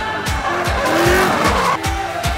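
Drift car sliding, tyres squealing with the engine revving, in a burst that starts about half a second in and cuts off suddenly near the end. It is mixed over electronic music with a steady beat.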